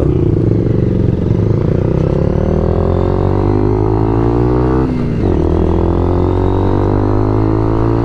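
Motorcycle engine accelerating hard, its pitch climbing, with a quick upshift about five seconds in, then climbing again in the next gear.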